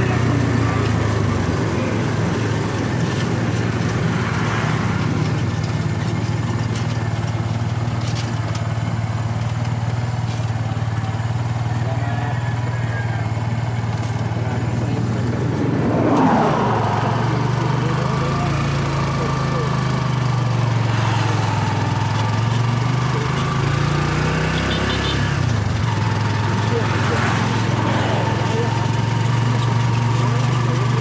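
Engine of a road vehicle running steadily while under way, with wind and road noise. The engine note dips and then rises again a little after twenty seconds, and there is a brief louder swell about sixteen seconds in.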